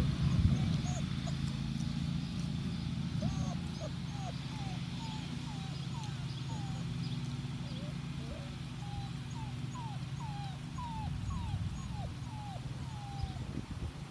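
Six-week-old Doberman puppies whining and yipping while they play-wrestle: a string of about twenty short, high squeals, each bending up or down in pitch, over a steady low hum.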